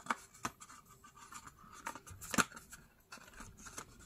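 Light taps and rustles of a small cardstock box being handled and turned in the hands, a few short sharp ticks scattered through, the loudest about two and a half seconds in.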